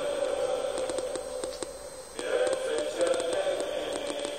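Choral singing or chanting: several voices holding long notes, which thin out briefly about halfway through and then swell again.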